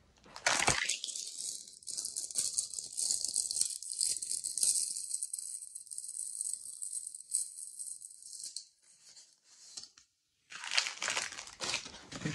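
Clear plastic packaging crinkling and rustling as a craft-kit bag is opened and its contents pulled out: a busy crackling for about eight seconds, a short pause, then more rustling near the end.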